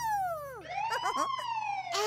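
A high cartoon voice imitating a police car siren, "wee-oo": the pitch slides down, then rises and slowly falls again.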